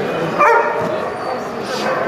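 A dog barks once, sharply, about half a second in, over background chatter.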